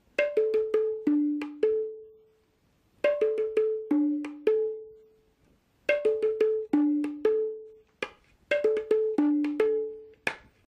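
Duggi tarang, a set of three tuned small hand drums, played with the hands in short melodic phrases of quick strokes. The strokes move between a low, a middle and a high pitch, and each note rings briefly. The phrases are about two seconds long, with pauses of about half a second to a second between them.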